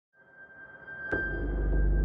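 Trailer sound design: a thin, steady high tone fades in, then about a second in a low impact hits and a deep rumble swells beneath it.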